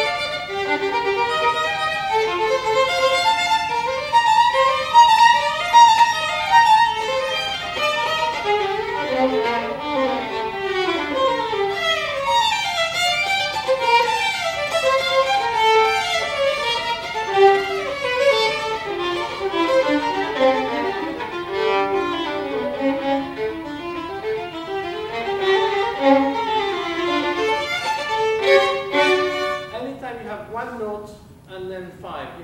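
Two violins playing a passage together, with quick rising and falling runs of notes. The playing breaks off at the very end.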